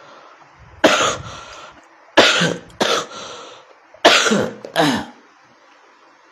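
A person coughing: five coughs in three bouts, one alone and then two pairs, with short pauses between.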